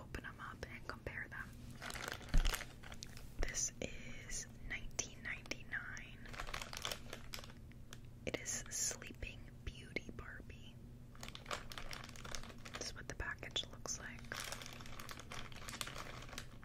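Sealed clear plastic Happy Meal toy bag crinkling and crackling as it is handled and squeezed close to the microphone, with a single thump about two and a half seconds in.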